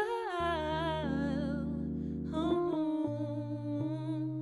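Female jazz vocalist singing a wordless line that slides down in pitch over the first two seconds, then holds a new note with vibrato. Underneath are soft Fender Rhodes chords and held electric bass notes.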